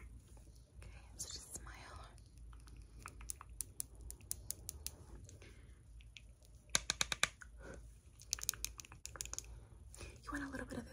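ASMR makeup tapping: light clicks and taps of a makeup brush and long nails on a plastic blush palette as the brush is worked into the blush, with a soft brush swish early on and a quick run of louder taps about seven seconds in.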